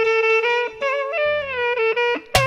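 Saxophone playing an ornamented melody with a live band, the notes stepping and bending in pitch, with short breaks between phrases.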